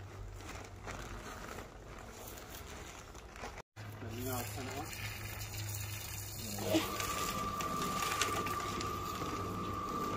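Electric cement mixer running with broken rubble in its drum: a steady motor hum, joined by a steady higher whine about seven seconds in.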